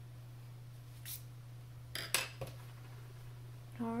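A pencil set down on a desk: two sharp clicks about two seconds in, over a steady low hum.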